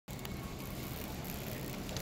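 Metal shopping cart rolling on a concrete store floor: a steady low rumble with a few faint clicks.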